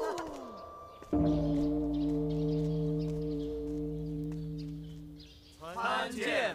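A large temple bell struck once about a second in, ringing as a steady low hum that slowly fades over about four seconds.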